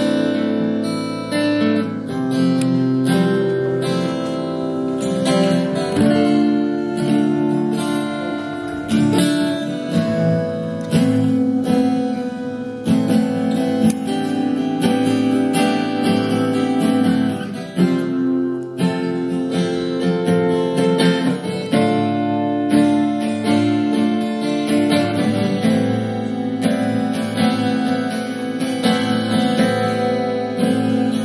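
Two acoustic guitars playing an instrumental passage, picked and strummed, with no singing.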